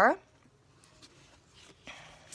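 A woman's voice trails off. Then comes the faint handling of a hardcover book with a paper dust jacket: a few soft clicks and paper sounds as the cover is lifted open.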